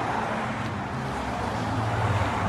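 Steady road-traffic noise: a continuous low hum with a faint held tone over an even wash of noise.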